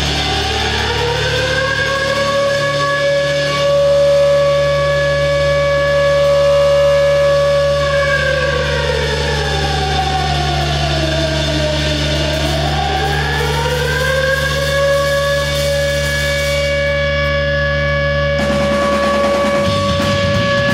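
A loud, siren-like sustained tone from a live noise-rock band's noise instruments: it slides up at the start, holds, sweeps down and back up in the middle, then holds again over a steady low drone. Near the end the full band comes crashing back in.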